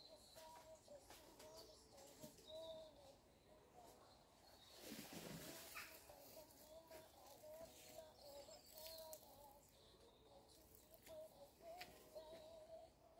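Near silence: faint outdoor ambience with distant birds calling on and off, and a short rush of noise about five seconds in.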